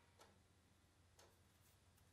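Near silence: faint room tone with soft ticks about once a second.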